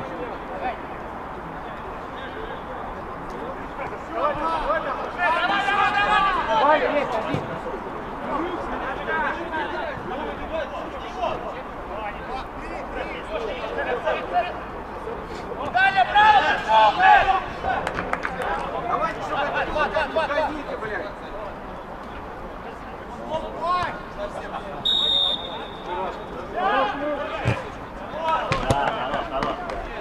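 Footballers' voices shouting on the pitch in several bursts over open-air background noise, with a few sharp ball kicks near the end and a short high whistle tone about 25 seconds in.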